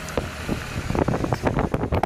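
Road noise from inside a moving car, with wind buffeting the microphone in a quick run of thumps, busiest in the second half.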